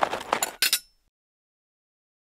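Logo sound effect: a quick run of glassy clinks and ticks that cuts off suddenly less than a second in.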